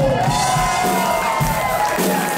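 A live rock band vamps, with held, gliding notes over a steady kick-drum pulse, while the audience cheers and whoops.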